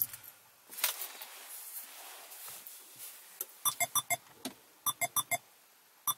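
2008 Subaru Liberty's engine shutting off as the key is turned, its hum dying away right at the start. After a quiet few seconds come two quick runs of short electronic beeps, about four and five seconds in.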